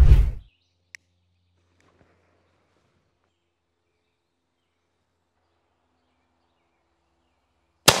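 A Traditions Mini Ironsides black-powder mini cannon firing once near the end: a single sharp report after a long, near-silent wait while the fuse burns. A brief low rumble comes at the very start.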